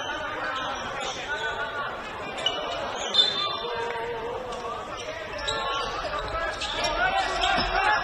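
Basketball game in a large gym: a ball bouncing on the hardwood court among players' and spectators' voices calling out, with the hall's echo. There are a couple of sharp knocks about two and a half and three seconds in.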